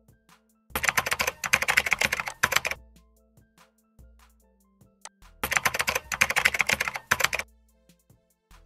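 Two bursts of rapid computer-keyboard typing, each about two seconds long: the first starts just under a second in, the second a little after five seconds. Soft background music plays underneath.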